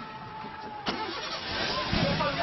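Landslide: rock, earth and debris sliding down a hillside, an unbroken noisy rumble that grows louder about a second and a half in, with a single sharp click just before the middle.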